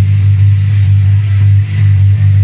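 Electric bass guitar playing a rock bass line, holding low notes and changing pitch near the end, over a full-band rock recording with guitars.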